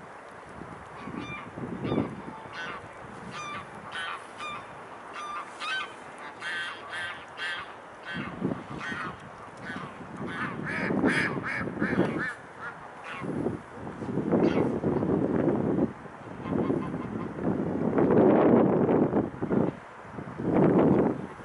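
Waterfowl calling: a series of short pitched calls in quick succession over roughly the first twelve seconds. In the second half, gusts of wind rumble on the microphone, loudest near the end.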